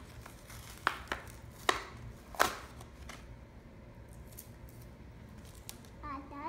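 Four sharp clicks in the first two and a half seconds, then faint handling noise: a plastic amulet necklace being worked free of its card packaging.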